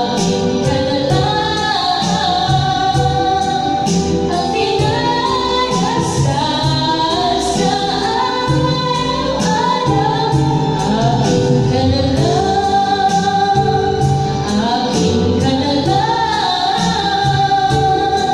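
A woman singing karaoke into a corded microphone over a backing track with a steady beat, her voice amplified through the videoke system.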